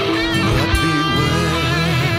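Rock band music: an instrumental passage led by electric guitar playing wavering, bent notes over a steady bass and rhythm backing.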